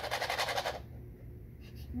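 Small fingerboard wheels rolling across a hardwood floor, making a fast, even rattle that stops about a second in.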